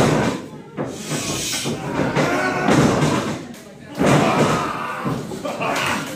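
Pro wrestlers' bodies hitting the ring mat and ropes with sharp slams, one at the start and another about four seconds in, over crowd voices in a large hall.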